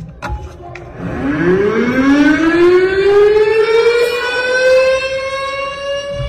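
A siren winding up: it starts low about a second in and rises steadily in pitch, levelling off into a long, steady wail.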